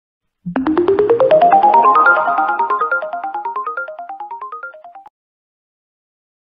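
Short electronic intro jingle: a fast series of short notes climbing in pitch in repeated overlapping runs, growing quieter and cutting off suddenly about five seconds in.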